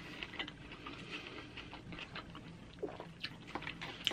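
Close-miked chewing of crisp flatbread pizza: a run of soft crunches and small mouth clicks.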